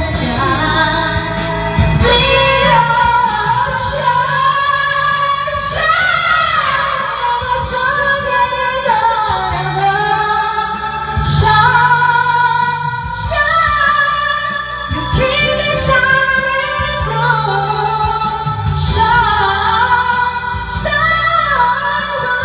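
Music: a woman singing a song over instrumental backing, her voice sliding between long held notes.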